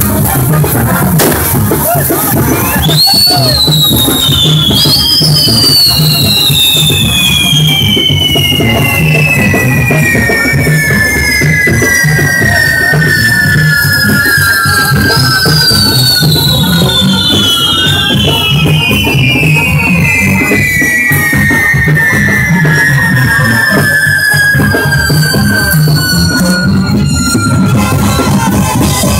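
Whistling fireworks on a burning castillo: several long whistles, each sliding slowly down in pitch as it burns, one starting a few seconds in, another soon after and a third about halfway. Under them runs music with drums.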